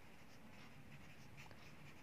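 Faint scratching of a pen writing on a workbook page.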